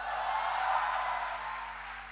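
Audience applause with a few cheers, swelling quickly at the start, peaking within the first second, then slowly tapering off.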